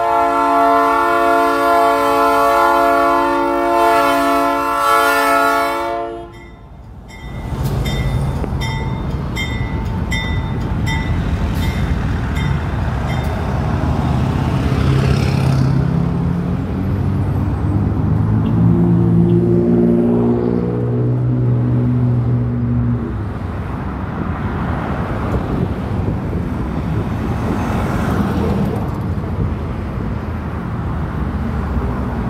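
Freight locomotive's air horn sounding one long chord that cuts off about six seconds in. Then the locomotive's diesel engine and the rolling train rumble on, with a run of clicks a couple of seconds later and the engine's pitch rising briefly past the middle.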